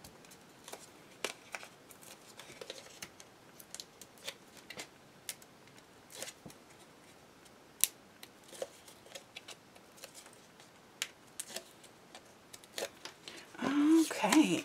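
Faint scattered clicks and rustles of small cardstock pieces being handled and pressed together, with adhesive-tape liner being peeled.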